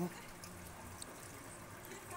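Water from a drinking-water line running steadily, a faint even rush.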